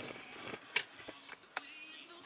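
Faint handling noise with two short sharp clicks, about a second apart.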